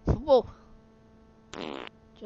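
Fart sound effects played by a joke web page: two short blasts, a loud one at the start and a weaker one near the end.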